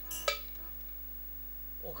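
Steady electrical mains hum from the microphone and amplification chain, with a short sharp noise just after the start.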